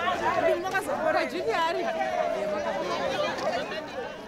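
Several voices chattering over each other, with one long held tone sliding slowly downward through the middle.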